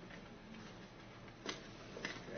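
A single sharp click at a laptop about a second and a half in, over quiet room tone.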